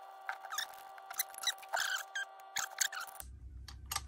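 Light metallic clicks and clinks of a steel bearing splitter being handled: its halves are being taken apart and fitted around a water pump's drive gear. There are many small irregular ticks, mostly in the first three seconds.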